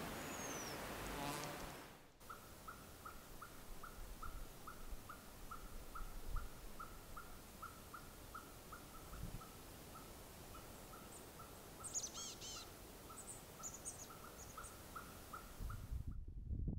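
Faint outdoor ambience. A steady rushing hiss with a brief high bird whistle comes first. About two seconds in, after a cut, a single short bird call repeats evenly about three times a second, joined by a few higher chirps near the end.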